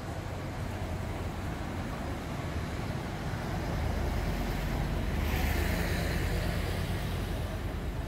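Street traffic: a steady low rumble of cars, taxis and a bus in slow traffic. It swells about halfway through, with a brief hiss just after the middle.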